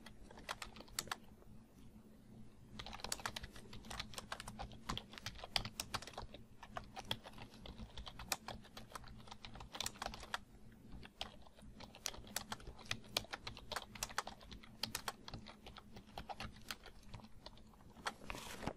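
Computer keyboard being typed on in irregular runs of key clicks with short pauses between them, as a sentence of text is entered.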